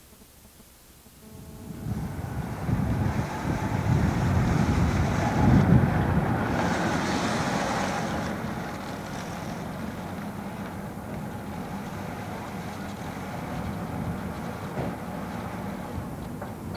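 A car's engine running close by. It comes in about a second and a half in, swells loudest a few seconds later, then settles to a steady rumble.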